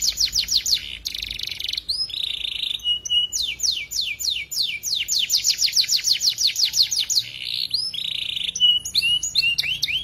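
Domestic canary singing a long song of rapid trills: fast runs of downward-sweeping notes, about ten a second, broken by buzzy rolls and short whistled notes that cluster near the end.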